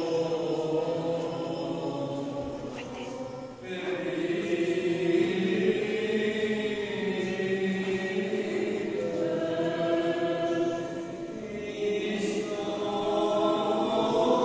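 Choir singing a Byzantine-rite liturgical chant during the distribution of communion, in long held phrases, with a new phrase entering about four seconds in and again near the end.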